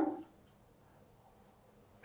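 A marker writing on a whiteboard: faint short strokes, about half a second in and again about a second later.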